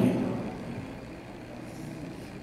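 Steady low background noise, a constant rumble and hiss with no distinct events, under the tail end of a man's voice fading out at the start.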